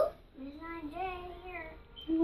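A young girl singing softly to herself: a short, gently wavering tune of held notes, quieter than ordinary talk.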